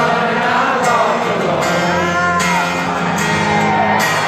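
Rock band playing live through an arena sound system: electric guitars and singing over a steady sustained chord.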